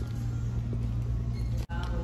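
Steady low hum of store ambience with faint background music. The sound cuts out for an instant near the end.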